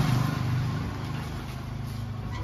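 A motor vehicle's engine running, a steady low hum that is loudest at the start and eases off over the following second.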